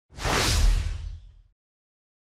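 A whoosh sound effect with a deep low boom underneath, swelling in quickly and fading out after about a second and a half, marking a transition to a new section title.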